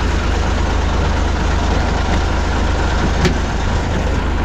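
Old truck's diesel engine idling steadily with a deep, even throb, very noisy close up. A single sharp click about three seconds in as the cab door is opened.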